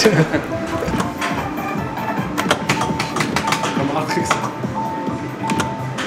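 Electronic slot machine's sounds during its risk-ladder gamble: a busy patter of clicks, then a run of short beeps at one pitch, about one every 0.7 s, in the second half, over the arcade's music and chatter.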